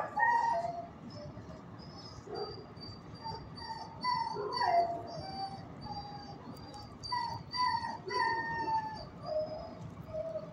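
Dogs whining and howling in a shelter kennel: a string of short, high cries, many falling in pitch, with a louder yelp at the start and another about four seconds in.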